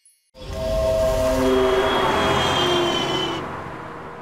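Dramatic swell in a Hindi TV serial's background score: a sudden loud rumble with a few held notes over it, fading out over about three seconds.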